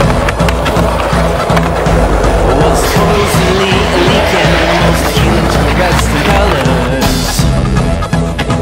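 Soundtrack music with a steady beat and singing, mixed with skateboard wheels rolling and scraping on concrete. Short scraping bursts come about three seconds in, again about five seconds in, and near the end.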